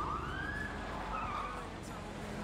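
Police siren wailing: a rising sweep right at the start, then a wavering tone, over a low street rumble.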